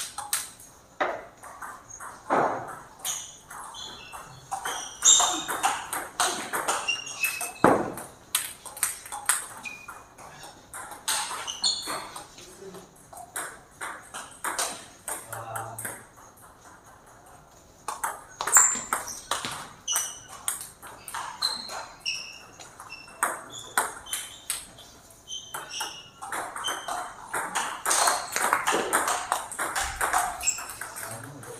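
Table tennis rallies: the ball clicking sharply off bats and table in quick exchanges, many hits followed by a short high ping. There are several runs of play, with a lull in the middle.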